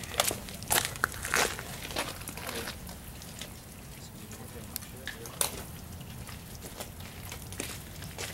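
Gravel crunching in scattered short clicks, densest in the first two seconds, with one sharper crunch about five and a half seconds in.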